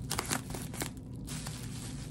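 Plastic bubble wrap crinkling and crackling as hands fold and press it around the base of an object, busiest in the first second and softer after.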